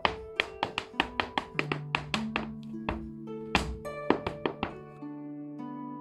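Irish hard-shoe dance steps tapping on a plywood board, a quick run of sharp strikes, about four a second, that stops about five seconds in. Under them runs plucked, harp-led folk music.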